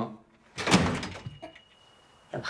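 A wooden door banging once as it is opened, a single sharp knock a little under a second in with a short rattle dying away after it.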